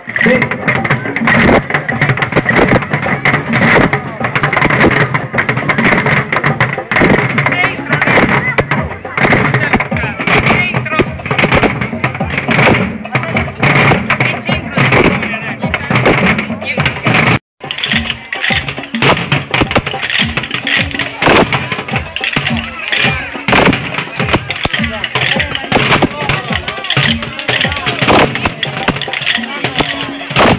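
A group of children beating barrels with drumsticks, striking the centre of the barrels: a dense, fast clatter of stick hits that runs on with a crowd talking behind it. The sound breaks off for an instant a little past halfway, then the hitting carries on.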